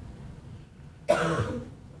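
A man coughs once, a sudden cough about a second in that dies away within half a second.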